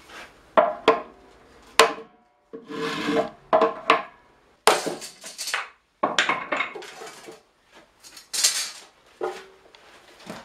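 Hammer blows on a hoop driver against the metal hoops of a small oak barrel, three sharp strikes with a short ring in the first two seconds. Then a run of rough scraping and rubbing noises as the barrel and its hoops are worked and handled.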